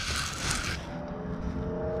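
Curtain fabric rustling close to the microphone in a short burst during the first second as the curtain is handled, followed by a faint low hum.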